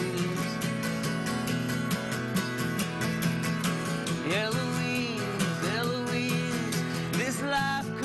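Live country-folk music: an acoustic guitar strummed in a steady rhythm, with a melody line that slides up and down in pitch in the middle and again near the end.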